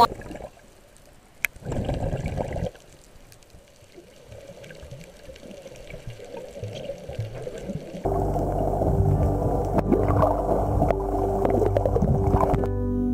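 Muffled underwater water noise picked up by a camera beneath the surface, slowly growing louder. About eight seconds in, background music with steady held notes starts and is the loudest sound.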